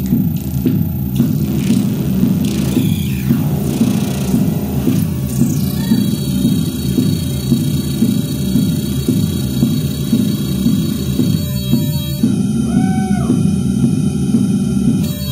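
ARP 2600 analog synthesizer playing a dense, rapidly pulsing low drone. Steady high tones join it about halfway through, and a short tone rises and falls near the end.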